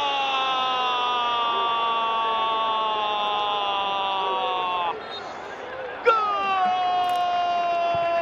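Football commentator's long drawn-out goal cry, held for about five seconds at a slowly falling pitch, then cutting off sharply, over crowd cheering. After a second or so of crowd noise, a second long held call starts about six seconds in.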